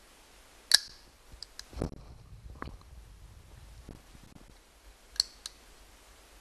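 Sharp clicks and light knocks of hand tools handled against the plastic and metal of a leaf blower engine, with no drill running. The two loudest clicks come about a second in and near the end, with a soft thud around two seconds.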